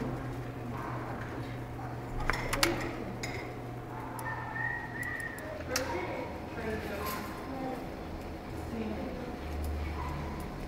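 Classroom background of children's voices, with a few sharp clicks and clinks, the loudest pair about two and a half seconds in and another near six seconds.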